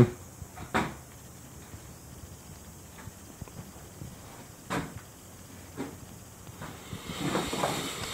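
Faint steady room hiss broken by three scattered knocks, footfalls on a bare wooden subfloor.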